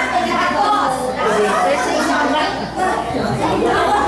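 Speech and chatter from several people talking at once.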